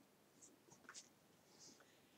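Near silence: room tone, with a few faint, brief ticks.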